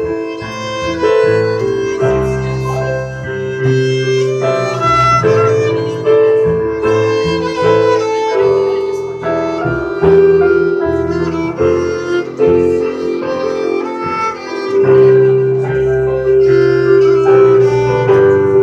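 Instrumental break of a folk song played live: a bowed violin holding long sustained notes over plucked upright bass and keyboard.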